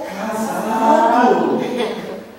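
A woman's long, drawn-out cry without words, held unbroken, its pitch sliding down near the end.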